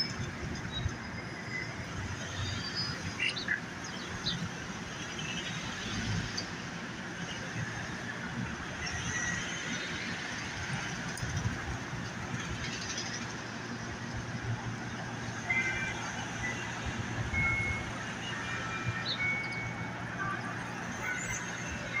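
City street ambience: a steady low rumble and hiss of traffic, with scattered short clicks and occasional brief high chirps, most of them in the second half.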